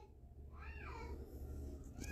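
A single faint, high-pitched cry that rises then falls in pitch, lasting under half a second about half a second in, over a low steady hum.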